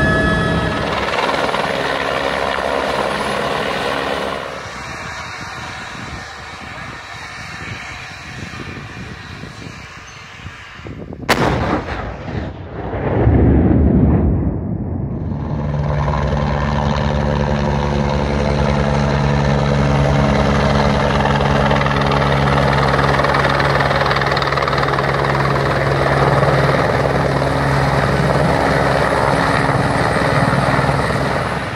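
Helicopter engine and rotors heard from inside the cabin, then a quieter stretch. About eleven seconds in comes one sharp bang from a Gazex gas exploder being test-fired, with a loud rumble that dies away over the next few seconds. After that a helicopter hovers close by with a steady, low rotor throb.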